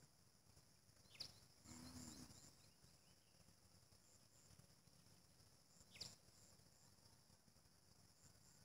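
Near silence with faint, steady insect chirring, broken by two quick downward-sliding bird whistles, about a second in and again near six seconds, and a brief low sound around two seconds in.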